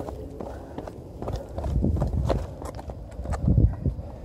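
Footsteps of a hiker walking on a mountain trail, irregular steps over a low rumble, louder in the middle.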